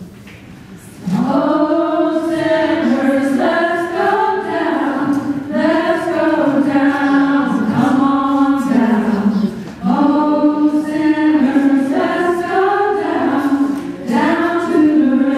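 Four women singing together as a small vocal group. The phrases start about a second in, with a short breath pause near ten seconds.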